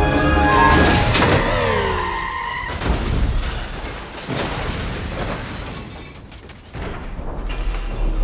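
Orchestral action score holding a loud sustained chord, broken about a second in by a boom and shatter like a car crash, with falling, sliding tones after it. A few more low hits follow, the sound thins out, and it swells again near the end.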